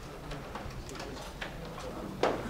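Quiet classroom bustle as students pack up to leave: faint rustling and a few small clicks, with a low murmur of voices.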